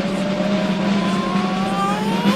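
Sound effect of a steady low hum with a slowly rising whine, like a motor winding up.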